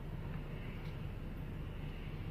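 A car's engine idling, heard inside the cabin as a steady low hum.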